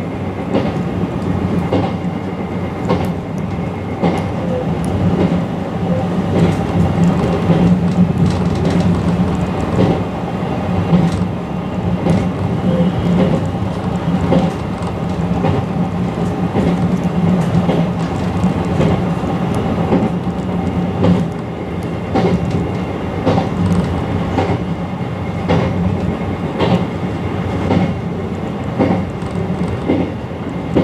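Izukyu Resort 21 electric train running at speed, heard from the front of the train: a steady running hum with the clickety-clack of the wheels over rail joints.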